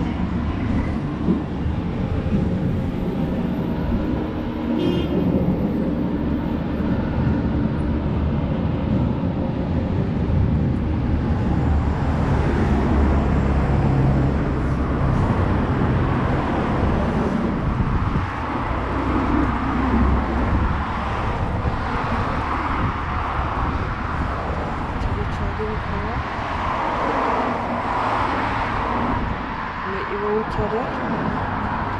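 Street ambience from a walking camera: wind buffeting the microphone with a steady low rumble, and road traffic passing alongside. The rumble swells for several seconds around the middle of the clip.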